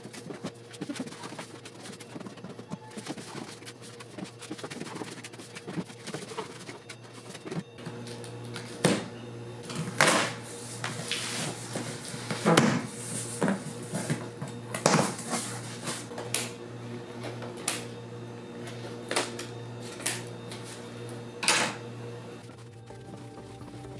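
Cardboard shipping boxes being handled: a run of sharp scrapes and knocks from about eight seconds in, roughly one every second or two, over quiet background music with steady tones.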